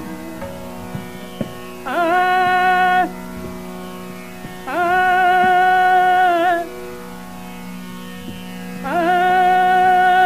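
Hindustani classical singing in raga Bageshree: three long held notes, each ending in a wavering ornament, over a steady drone that keeps sounding between the phrases.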